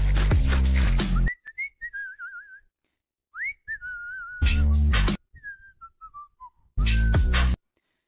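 Whistling of a short tune in wavering notes, with a stepwise falling phrase near the end. Short bursts of loud, bass-heavy music come at the start, in the middle and near the end.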